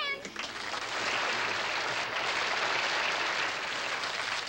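Studio audience laughing and applauding, a steady wash that lasts about four seconds, opening with a woman's brief high-pitched giggle.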